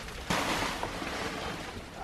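Heavy rain on a school bus's roof heard from inside the bus, a steady hiss. A louder rush of noise sets in about a third of a second in and slowly fades.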